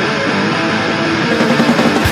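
Guitar riff in a hardcore punk (powerviolence) recording, with no drums under it; the drums come back in right at the end.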